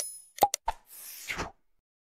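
Animation sound effects: a chime ringing out at the start, then three or four sharp mouse-click pops about half a second in, and a short whoosh that ends about a second and a half in.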